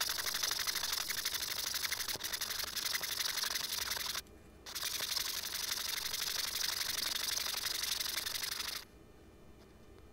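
Scroll saw running, its reciprocating blade cutting through a small wooden figurine with a fast, rattling buzz. It stops for about half a second a little after four seconds in, starts again, and stops near the end.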